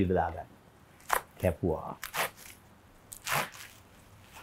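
A bunch of fresh green leaves crunching and rustling as they are pressed and gathered on a wooden chopping board, in a few short separate crunches, the last and loudest near the end.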